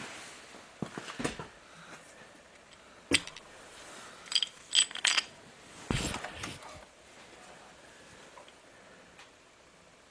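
Metal clicks and clinks of an engine main bearing cap being lifted off the crankshaft and handled against the block, with a few short ringing clinks about four to five seconds in and a duller knock about six seconds in.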